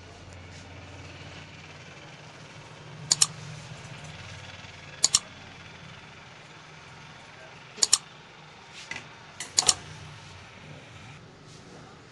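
Barber's scissors snipping hair: about four sharp double clicks a couple of seconds apart, over a low steady hum.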